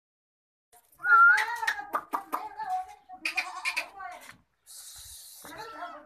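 Barbari goat bleating: a loud, long, quavering call starting about a second in, then a second shorter one after about three seconds. A brief hiss follows near the end.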